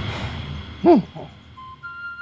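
A single short hoot, rising and falling in pitch, about a second in, with a fainter second hoot just after. Soft flute music with held notes comes in near the end.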